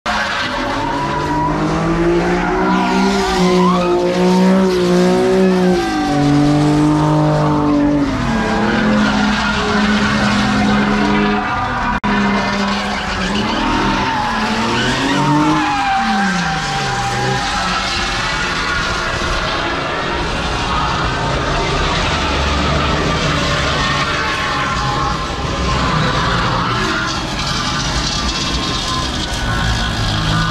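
A car's engine revving hard and holding high revs while its tyres squeal and skid through donuts. The engine note steps up and down and falls away about sixteen seconds in.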